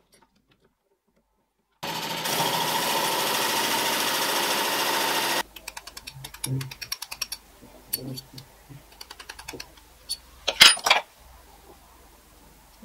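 Electric drill in a drill stand running steadily for about three and a half seconds as a plug cutter bores into wood, then stopping abruptly. Light clicks and taps follow, with two sharp knocks near the end as a mallet strikes the bit to free the wooden plug.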